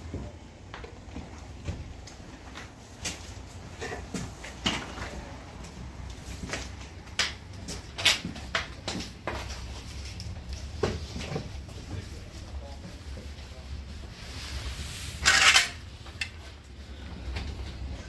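Scattered clicks, knocks and clatter of tools being handled and moved about, with one louder short burst of noise about fifteen seconds in.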